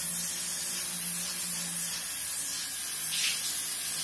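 Water spraying steadily from a handheld shower head fed by an instant electric water heater, a constant even hiss.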